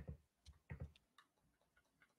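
Near silence with a few faint computer-mouse clicks in the first second.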